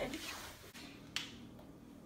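A quiet room with a faint rustle at first and a single short, sharp click about a second in.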